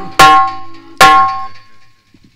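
Two sharp percussion strokes about a second apart, each with a bell-like ringing tone that fades out within about half a second, part of the accompaniment to a live stage song.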